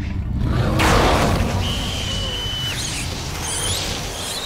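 Horror TV soundtrack with music and sound effects: a low rumble, a sudden rushing swell about a second in, then a thin held high tone and eerie warbling high effects near the end.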